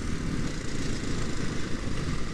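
Motorcycle engine running steadily at road speed, with wind rushing over the rider's helmet-mounted microphone.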